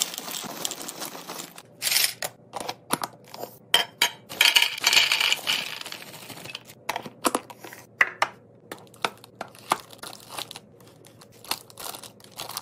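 Dry snacks poured from a bag into a clear plastic bin: pretzels and crackers rattling and clicking against the plastic and each other, with the bag crinkling. About halfway through, small sandwich crackers are poured in, and the sound breaks into a run of separate clicks.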